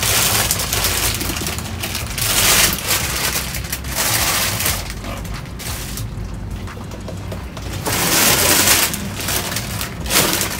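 Plastic produce bags and clamshell packs crinkling and rustling as they are dug through and shifted by hand, in loud crackly surges with a quieter spell near the middle; near the end a cardboard box is moved.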